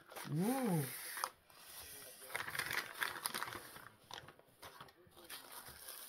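Paper rustling and crinkling in irregular bursts as a tissue-paper-wrapped package is pulled out of a mailing envelope.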